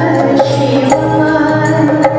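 A woman singing a Hindi film song live into a microphone, holding long notes over band accompaniment with a steady low drone and percussion strokes.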